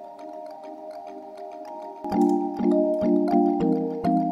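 Synthesized kalimba patch, made in Serum, played through a high-passed delay with added reverb: a soft wash of ringing echoed tones with no low end. About two seconds in, louder plucked notes with sharp clicky attacks come in roughly every half second.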